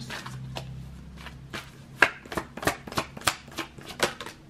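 A tarot deck being shuffled by hand: a quick run of card flicks and slaps that gets louder and faster about halfway through.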